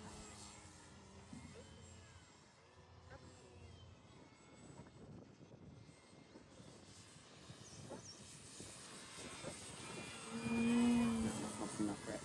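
Electric RC aerobatic plane's motor and propeller heard faintly at a distance, growing louder near the end as a steady hum when the plane comes closer.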